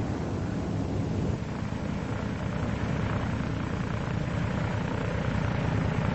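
An F4U Corsair's Pratt & Whitney R-2800 radial engine and propeller running steadily during a landing: a dense, even rumble with a rapid pulsing.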